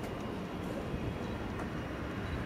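Steady distant rumble of a Boeing 747-400 jet airliner being pushed back by a tug, with a faint thin high whine over it.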